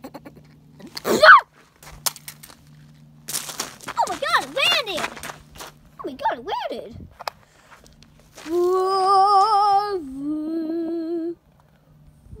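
A person's voice making wordless vocal sounds while voicing a toy: a sharp squeal about a second in, a few wavering groans, then a long held note that steps down lower and cuts off shortly before the end.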